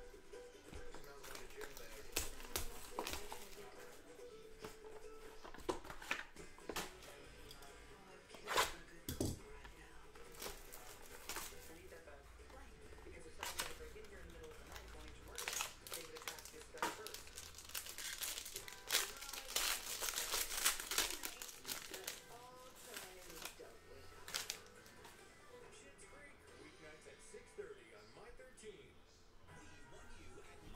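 Plastic shrink wrap on a trading-card hobby box being crinkled and torn off, in quick crackling bursts that are thickest about two-thirds of the way through.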